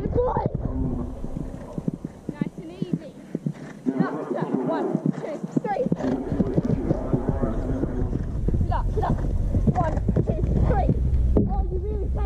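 A horse galloping on dry grass, its hoofbeats drumming as it passes close by, then fading and picking up again as it goes over a cross-country fence. Voices can be heard in the background.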